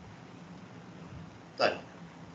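Low steady microphone hiss and hum, then, about a second and a half in, one short, loud vocal sound from a person.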